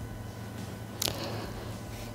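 Quiet room tone: a low steady hum, with one short soft hiss about a second in.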